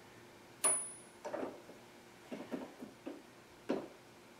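A hardened scribe, held fixed in a milling machine's collet, scrapes a shallow key slot into a metal part as it is worked back and forth by hand, taking a couple of thousandths per pass. It makes a series of short scrapes and clicks, about six in four seconds, with no spindle running. The first and loudest comes about two-thirds of a second in, with a brief high ring.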